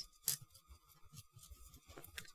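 Near silence with a brief click about a third of a second in and a few faint ticks after, from plastic model-kit parts being handled in the fingers.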